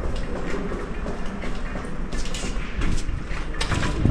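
Electric scooter rattling and knocking as it goes down a flight of concrete steps, with a heavy thump at the end as it reaches the bottom.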